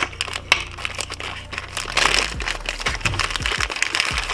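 Clear plastic zip-top bag crinkling and crackling as hands open it and handle the mount inside, over background music.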